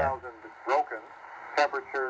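Single-sideband shortwave voice broadcast of a military aviation weather report (volmet) on 6754 kHz, coming from the XHDATA D-808 portable receiver's speaker. It comes in as thin, clipped bursts of speech, fine-tuned so the voice sounds natural.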